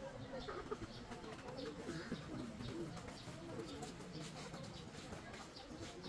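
Birds calling, one a high chirp repeated about twice a second, over a low, irregular murmur.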